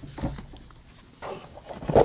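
A person with a head cold sniffling through a congested nose: a few short, rough nasal noises, the loudest near the end.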